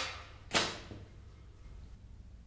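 A single sharp knock of a hard object being set down, about half a second in, with a short echoing decay. At the start, the tail of a louder crash is fading out.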